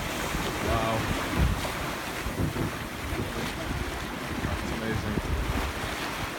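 Wind buffeting the microphone over the steady rush of choppy sea water around a sailing yacht underway.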